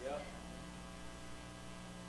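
Faint, steady electrical mains hum from an amplified sound system, a few low steady tones with no change.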